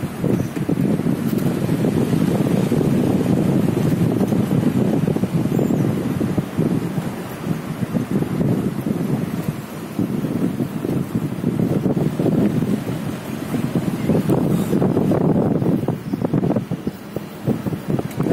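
Wind buffeting the microphone of a camera held at the side of a moving car, a low, gusting rush that swells and dips.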